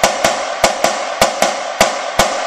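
Marching snare drum played with wooden sticks in double strokes (diddles), the strokes falling in pairs at about five a second, left hand leading, with the drum's ring and snare buzz sustained between strokes. This is the double beat rudiment exercise, a stripped-down roll played with the stick let to rebound.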